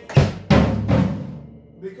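Three hits on a drum kit's floor tom in quick succession, each booming low and ringing on briefly after the strike.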